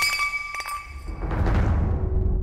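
A decorated glass vase hits the floor and shatters, with a few small pieces clinking just after. Dramatic background music runs under it and swells with a low rumble near the end.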